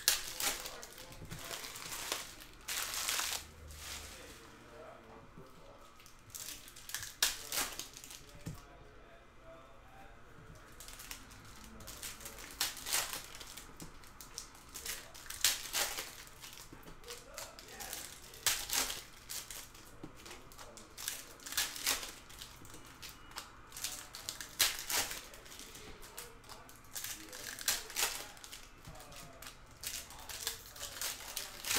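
Wrappers of 2018 Panini Contenders football card packs being torn open and crinkled by hand, in irregular bursts of crackling.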